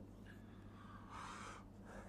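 Near silence with a low electrical hum, and one faint, soft intake of breath about a second in.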